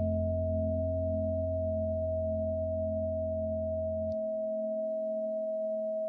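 Meditation music: a steady 639 Hz solfeggio sine tone held over a soft sustained lower drone. The deepest part of the drone drops out about four seconds in.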